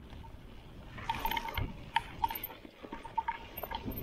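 Hardtail mountain bike riding a dirt forest trail: tyre noise on dirt with a rattle of clicks and knocks from the bike, growing louder and busier about a second in.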